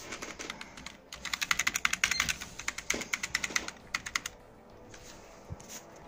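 A computer keyboard key tapped rapidly over and over, from about a second in for about three seconds, then stopping: a key being hammered during start-up to call up the boot device menu.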